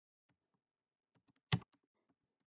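Computer keyboard being typed on: a run of faint, quick keystrokes with one louder key press about one and a half seconds in.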